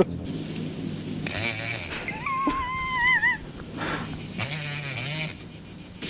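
High, wavering wail on the film's soundtrack, about a second long around the middle, among quieter scattered movie sounds and a low hum near the end.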